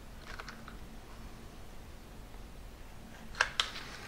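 Hot glue gun and small wooden block being handled, with a few faint clicks in the first second. Two sharp clicks follow in quick succession about three and a half seconds in.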